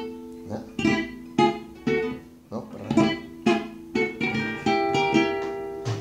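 Acoustic guitar playing a polka passage in F minor: sharply picked chords and single notes on a steady beat of about two strokes a second, with notes left ringing toward the end.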